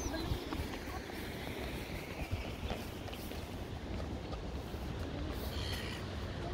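Wind buffeting the microphone over a steady outdoor rushing noise, with a few faint knocks.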